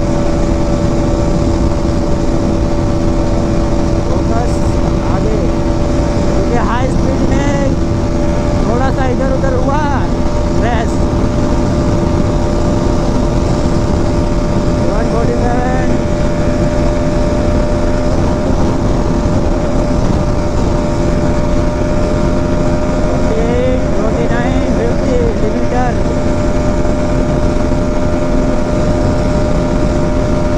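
Motorcycle engine running at a steady high speed on the highway, holding an even pitch throughout, under heavy wind rush on the microphone.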